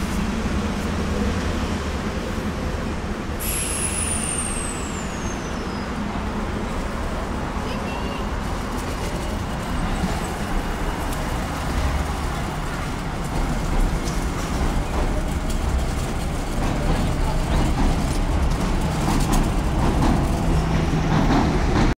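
Busy railway station ambience: a steady low rumble and noise, with a brief high whine falling in pitch about three and a half seconds in.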